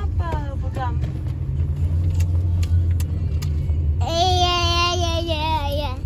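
Steady low road rumble inside a moving car, with a voice singing a children's camp song in short phrases that end in one long, wavering held note from about four seconds in.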